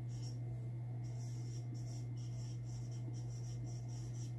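Marker pen writing on a whiteboard: a run of short strokes, heard over a steady low hum.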